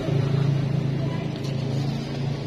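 A motor vehicle engine running at a steady speed, a continuous low hum with little change in pitch.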